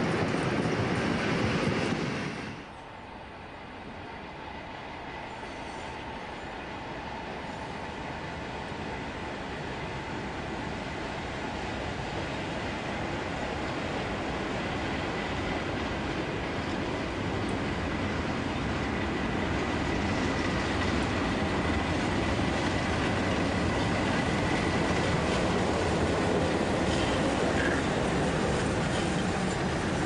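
A train of locomotives led by a DB class E94 electric locomotive, with a steam locomotive in its consist, rolling along the track. The close passing train is cut off suddenly a couple of seconds in, and then the train is heard approaching, its running and wheel noise growing steadily louder until it passes close by.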